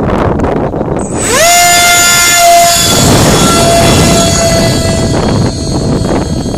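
The 50 mm electric ducted fan of a Mini F-18 model jet spooling up: a quick rising whine about a second in, then a steady high whine held at full throttle for several seconds, changing slightly near the end. Wind buffets the microphone throughout.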